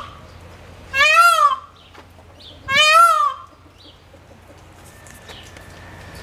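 A bird calls loudly twice, about two seconds apart; each call is short and rises, then falls in pitch.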